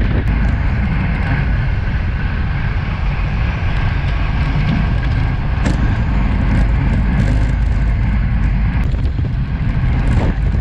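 Steady wind noise on a bike-mounted action camera's microphone while riding a road bike at speed, with road noise from the tyres underneath.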